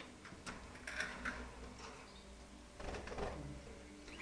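A few faint clicks and rattles of a wire birdcage being handled.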